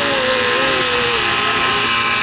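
Homemade electric paramotor's motor and propeller running steadily during a close low pass, with a long tone that slides slowly down in pitch through the first second or so.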